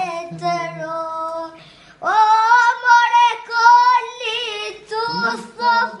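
A young boy singing an Albanian song in a loud, high voice, holding long notes; after a short break about two seconds in, he goes on at a higher pitch.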